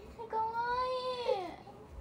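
A young child's voice: one long whining cry of about a second, high-pitched, rising slightly and then falling away.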